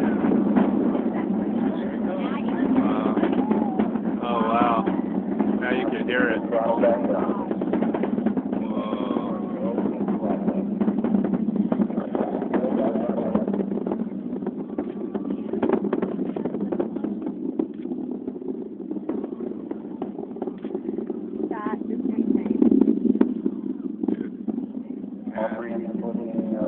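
Distant launch noise of the Space Shuttle, its solid rocket boosters and main engines heard from miles away as a steady, dense rumble full of crackle. It eases slightly mid-way and swells again a little after 20 seconds.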